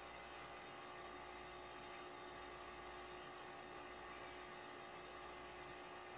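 Faint, steady electrical hum with a constant hiss beneath it: quiet room tone.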